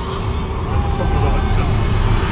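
Cabin noise of an Audi A1's 1.4-litre turbocharged four-cylinder (1.4 TFSI) and its tyres on a motorway: a steady low engine and road rumble that grows a little louder as the car pulls away.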